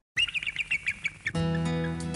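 A bald eagle's call: a rapid series of short, high chittering chirps for about a second. Then music comes in with sustained chords.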